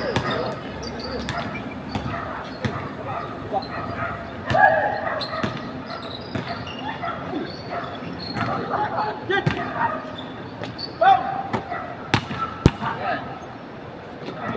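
Basketball bouncing on a hard court in irregular sharp thuds, with players' shouts and calls in between.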